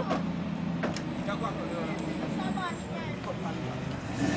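A vehicle engine idling with a steady low hum, with faint voices talking over it and a couple of brief knocks near the start.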